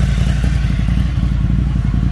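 Motorcycle engine idling, a steady low rumble.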